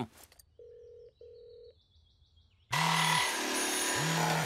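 Cartoon mobile phone placing a call: two short steady beeps as the number connects. About two and a half seconds in, a loud steady noise comes in with a low buzzing ring pulsing in it about every second and a bit, as the call rings through at the other end.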